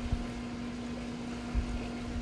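Steady low background hum at one pitch, with a few soft low thumps near the start and again near the end.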